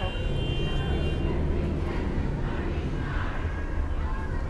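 Outdoor city street background: a steady low rumble of traffic with faint, distant voices.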